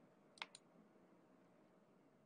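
Two computer mouse clicks in quick succession about half a second in, otherwise near silence.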